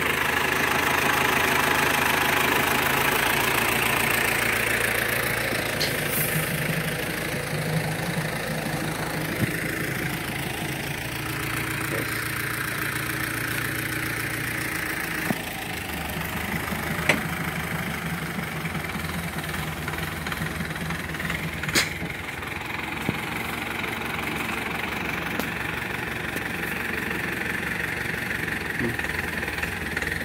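Engines of a tractor-drawn herbicide spraying rig running steadily, with a water pump driving the spray hose. The engine note shifts a couple of times, and there are a few sharp clicks.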